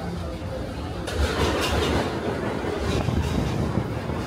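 Tokyo Metro Marunouchi Line subway train running along an underground platform. The rumble of the train and the clatter of its wheels on the rails swell from about a second in and carry on with repeated clacks.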